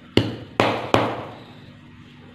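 Three sharp thuds within about a second as a hand pounds a heap of damp, clumpy sand against a hard floor, each dying away briefly.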